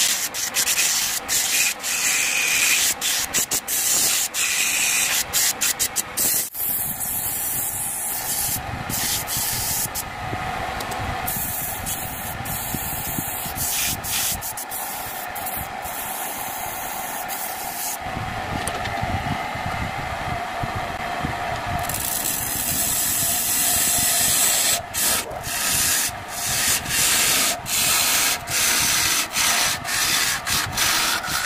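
Sandpaper pressed against a dry bamboo cup spinning on a wood lathe: a steady rubbing hiss over the running lathe, with frequent short breaks. Near the end a turning chisel cuts the outside of the cup, a choppier scraping that comes and goes in quick strokes.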